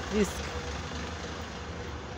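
A single short spoken word at the start, then a steady low rumble of outdoor street noise with a faint steady hum over it.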